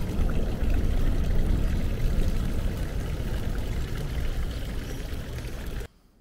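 Water from a street fountain pouring into its stone basin, with wind buffeting the microphone and a heavy low rumble. The sound cuts off suddenly near the end.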